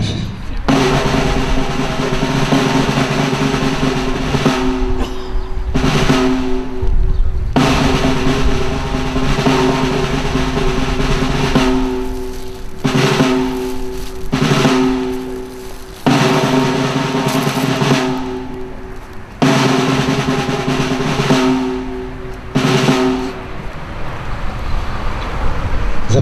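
Snare drum rolls played in long sustained stretches, broken by brief pauses and starting up again abruptly, the ceremonial roll that accompanies the laying of flowers.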